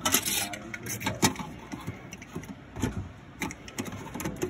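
Hands handling plastic shelf pusher and divider parts on their rail: an irregular run of clicks, taps and scrapes. The loudest clicks come at the start and about a second in.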